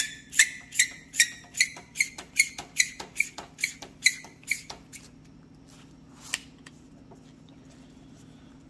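Gear-rack sleeve of a Hypertherm Duramax machine torch being screwed back onto the torch body by hand, squeaking and clicking about two and a half times a second with each twist. The squeaks stop about five seconds in, followed by one lone click a second later.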